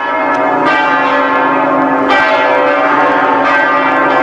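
Bells ringing in a dense peal, many tones sounding together and ringing on, with fresh strikes landing irregularly through it; the sound starts abruptly at the outset.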